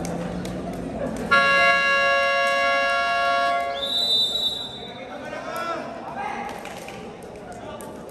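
A two-tone electronic buzzer sounds steadily for about two and a half seconds, marking the end of a timeout. A short, high referee's whistle blast follows. Crowd chatter echoes through a large gym throughout.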